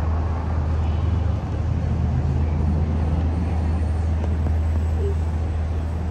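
City street traffic: a steady low engine rumble with a wash of road noise, holding level throughout.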